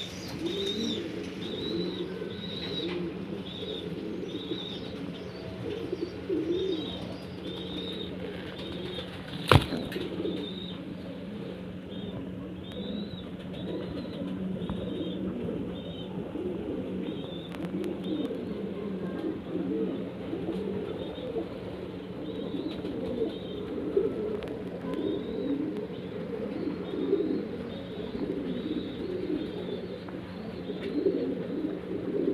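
Many pigeons cooing together in a loft, a dense overlapping murmur of low calls, with short high chirps repeating over it. A steady low hum runs beneath, and there is a single sharp click about ten seconds in.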